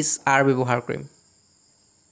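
A man's voice speaking briefly in the first second, then a pause in which only a faint steady high-pitched hiss is left.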